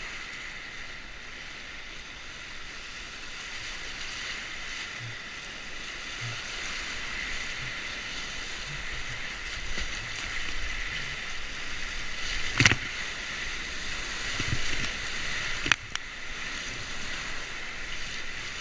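Whitewater rapids rushing and splashing around a kayak, a steady noisy rush that grows slowly louder as the boat runs through the rapids. Two sharp knocks, the loudest sounds, come about two-thirds of the way in and again three seconds later.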